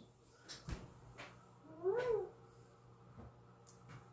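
A house cat meows once, a single rising-and-falling call about two seconds in. Before it come a few soft clicks as the oven door is opened.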